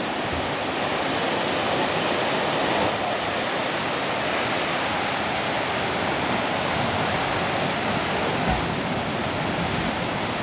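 Landslide: rock and earth pouring down a steep hillside, making a steady rushing noise without a break.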